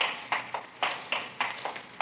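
Footsteps of hard-soled shoes on a hard floor, a steady walking rhythm of about three to four steps a second: a radio-drama sound effect of men walking.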